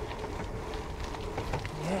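Gravel bike tyres rolling over a gravel track: a steady, even rolling noise with a low rumble and scattered small ticks and rattles.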